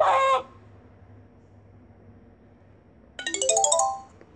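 Game-app sound effects: a short cartoon rooster call at the very start, then, about three seconds in, a quick rising chime jingle, the reward sound for finding a hidden gem.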